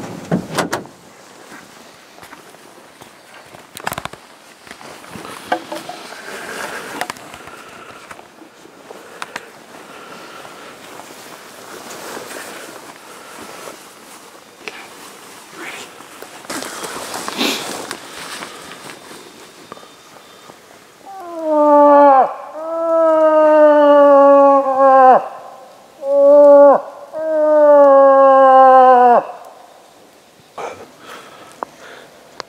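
A hunter voicing a cow moose call, starting about two-thirds of the way in: four loud, nasal, drawn-out moans in two pairs, a short call then a long one, each sagging in pitch at its end. Before the calls there is only soft rustling and handling of gear.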